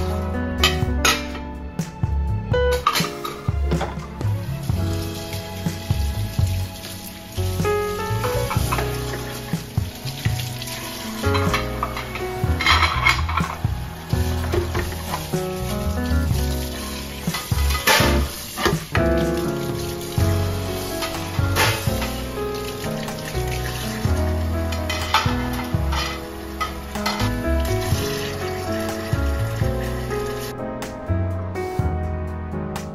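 Soft background music over a kitchen tap running into a stainless steel sink while dishes are rinsed under it, with a few knocks of dishes against the sink.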